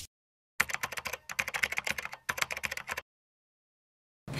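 Rapid keyboard-typing clicks, a sound effect for text being typed onto the screen, lasting about two and a half seconds with two short breaks, then cutting off.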